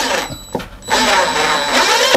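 Cordless drill-driver driving a screw into a wooden board in two runs: one that stops just after the start, then a longer one from about a second in, with a faint high whine over the motor.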